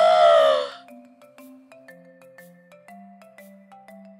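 A woman's short, drawn-out vocal exclamation in the first second, followed by soft background music of bell-like notes, a new note about every half second.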